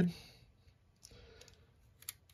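Faint handling of a small plastic model-car front end while its wires are threaded through: a few soft clicks and rustles about a second in, otherwise near silence.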